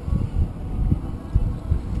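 Wind buffeting a hand-held camera's microphone on open water: irregular low rumbling gusts.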